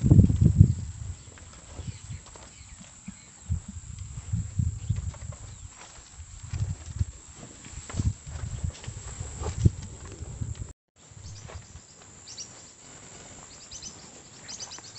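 Zebu cattle shuffling about in a dirt corral, with repeated low thumps and rumbles, loudest in the first second. The sound drops out briefly about eleven seconds in, and faint high bird chirps follow near the end.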